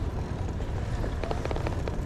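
Wind buffeting the microphone of a moving bicycle, heard as a steady low rumble together with tyre noise on a paved path. A few faint ticks come in the second half.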